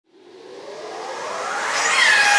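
Opening of a progressive house track: a synth noise sweep fading in from silence and swelling steadily louder, with faint pitches gliding upward as it builds toward the music.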